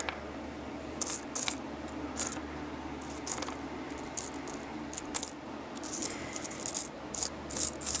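Pennies clinking against one another as a hand pushes and sorts through a pile of them, in about a dozen short, irregular clicks.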